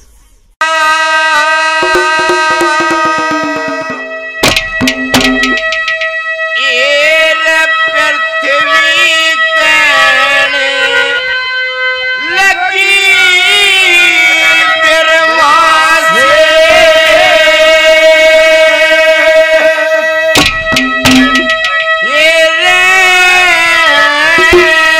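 Haryanvi ragni music: a harmonium holds a steady drone while a male singer sustains long, wavering sung notes over it. A short burst of music with a quick clicking beat opens the passage.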